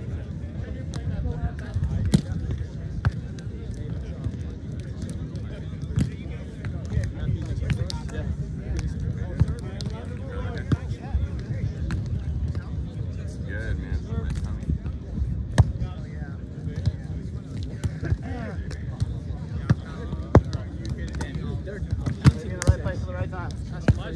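Beach volleyball being played: players' hands and forearms striking the ball give sharp slaps at irregular intervals, several close together near the end, over a steady low rumble and faint voices.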